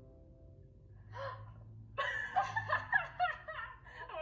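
A woman gasping and laughing from the vlog playing on a laptop: a short burst about a second in, then louder laughter from about two seconds in.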